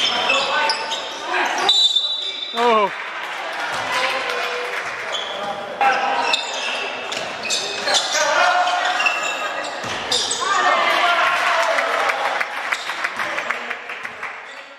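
Basketball bouncing on a gym's wooden court during live play, with players and spectators shouting, the echo of a large hall over it all.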